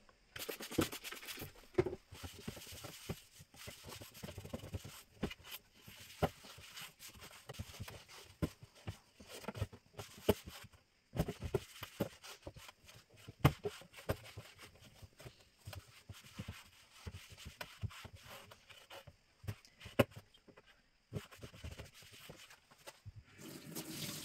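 Trigger spray bottle of kitchen cleaner spritzing in the first second or two, then a cloth wiping and scrubbing the bottom of a metal kitchen drawer, with scattered light knocks.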